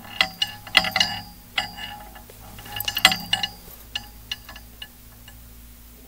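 Clicks and clinks of small hard objects being handled, some with a brief metallic ring. They come in clusters: a busy burst in the first second, another around three seconds in, then a few scattered clicks until about five seconds.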